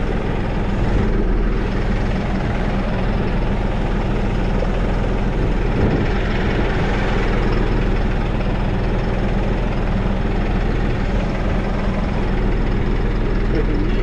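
New Holland loader tractor's diesel engine running steadily as the tractor is driven along, a low even drone.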